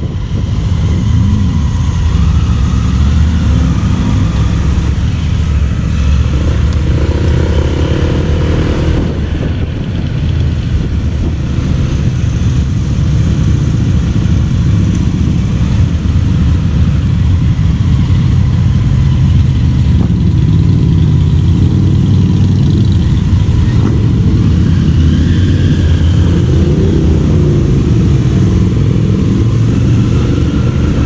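Motorcycle and scooter engines running at low speed in a group ride, including the rider's own Honda ADV 150, with a few rises and falls in pitch as the bikes pull away and slow.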